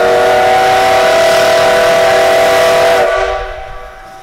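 Whistle of the steam locomotive C12 66, a C12-class tank engine, blowing one long blast: a chord of several steady tones over steam hiss, cutting off about three seconds in. It is the departure signal.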